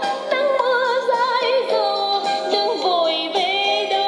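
National RX-F3 stereo radio cassette recorder playing a song through its small built-in speakers: a singer with a wavering vibrato over a backing band, thin and without bass.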